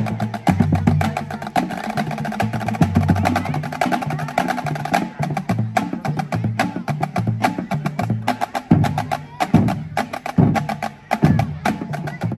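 High school marching drumline playing a cadence: rapid, dense snare drum strokes over tuned marching bass drums that step between different low pitches. Heavier single bass drum hits stand out in the last few seconds.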